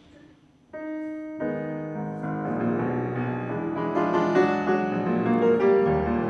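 Classical solo piano played by a pianist using his left hand alone: a single note about a second in, a second shortly after, then the piece builds into fuller, overlapping notes and grows louder.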